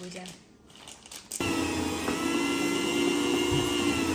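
Electric deli meat slicer switched on about a second and a half in, its motor and spinning blade running with a steady whine while it cuts thin slices of cured beef.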